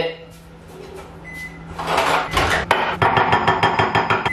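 Microwave oven humming, then a short high beep a little over a second in as the cook cycle ends, followed by clattering as the bowl is handled. A spoon then stirs the bowl of microwaved porridge oats with quick, regular clicks against the bowl.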